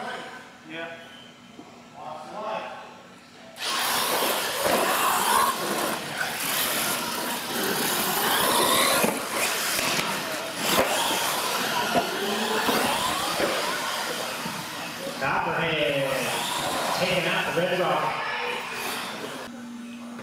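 Radio-controlled monster trucks launching and racing down a concrete track: a loud motor whine and tyre noise that starts suddenly a few seconds in, rises and falls in pitch, and runs until just before the end, with voices mixed in.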